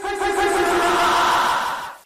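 A person screaming, one loud sustained scream held for nearly two seconds and cut off suddenly.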